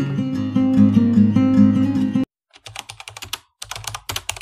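Acoustic guitar background music that cuts off abruptly about two seconds in, followed by runs of rapid clicking from a keyboard-typing sound effect.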